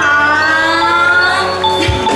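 Live band music opening a song: held keyboard chords sliding slightly in pitch over a steady bass, with a low drum thump near the end.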